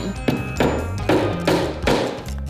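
A hammer tapping small nails into a plywood board, about five strikes at roughly two a second.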